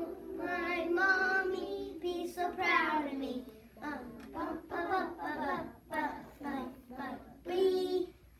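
A young child singing, in a high voice with some long held notes.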